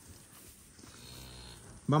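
A cow mooing faintly once, a single low call lasting about a second.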